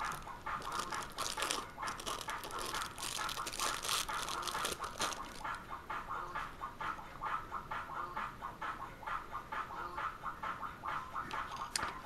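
Handling noise from a compact digital camera and its battery pack: small plastic clicks and rustling, busiest in the first five seconds and sparser after.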